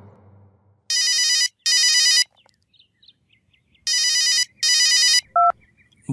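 A telephone ringing in a double-ring cadence: two rings, each of two short bursts. Near the end a short beep cuts it off as the call is answered.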